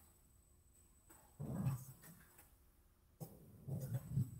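Mostly quiet room tone, broken twice by a short low hum of a man's voice, a hesitant 'hmm', about a second and a half in and again near the end.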